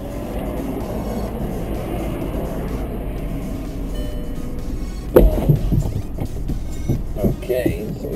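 Volkswagen Golf Cabriolet's electro-hydraulic fabric roof folding down: a steady whir from the roof mechanism, then a sudden loud knock about five seconds in, after which the sound turns rougher and uneven.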